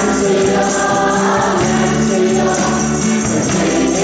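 A church worship band playing live: several voices singing a hymn together over strummed guitars and bass guitar.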